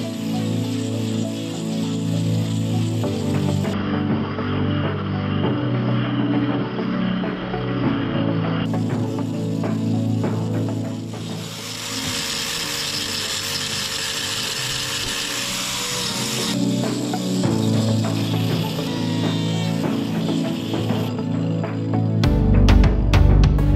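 Background music laid over a power grinder with a hoof-trimming disc sanding down a cow's claw. The grinding hiss comes and goes and is loudest for a few seconds past the middle.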